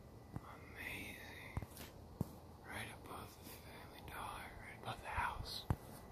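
Quiet whispering in a few short phrases, with several sharp clicks between them, the loudest click near the end.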